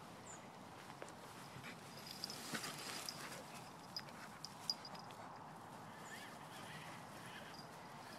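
A dog moving about in grass, rubbing and sniffing: faint rustling, busier about two to three seconds in, with a few sharp clicks a little later.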